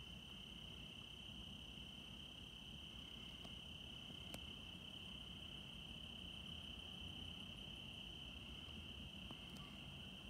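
Crickets calling in one steady, unbroken high note over a faint low rumble, with a single faint click about four seconds in.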